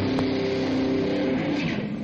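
Distorted electric guitars holding a chord that rings out and dies away near the end.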